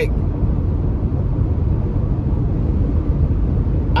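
Steady low rumble of road and engine noise inside a car's cabin while cruising on a highway.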